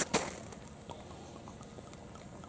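Champagne being poured from a freshly opened bottle into a cup: a faint, steady fizzing pour of frothy sparkling wine, with a short knock of the bottle being handled right at the start.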